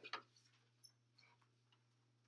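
Near silence: room tone with a steady low hum and a few faint, brief clicks, the loudest just after the start.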